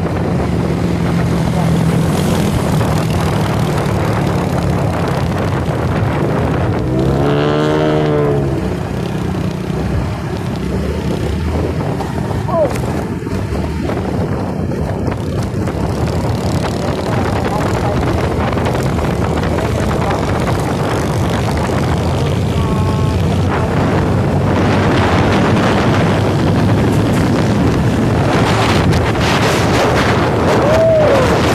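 Steady engine hum and road noise from a moving vehicle in traffic, with wind buffeting the microphone. A brief horn-like tone rises and falls about seven seconds in.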